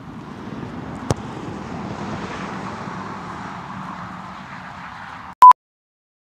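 A soccer ball struck once in a single sharp kick about a second in, over steady outdoor background noise. Near the end, a short, very loud beep, and the sound cuts off.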